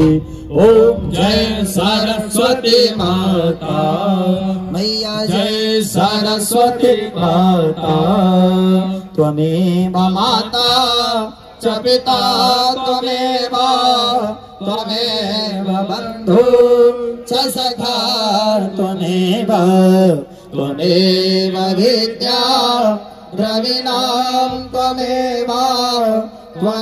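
Men singing a Hindu devotional aarti hymn to the goddess Saraswati into microphones, amplified through a loudspeaker. The singing runs in long melodic phrases with short breaks between them.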